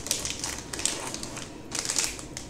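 Anti-static plastic bag crinkling and crackling in irregular bursts as the packaged device inside it is handled and lifted out of its box.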